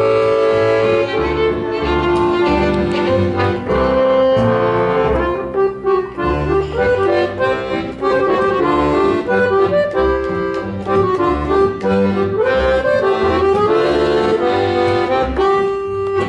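Giulietti piano accordion playing a solo melody with chords, with an upright double bass underneath.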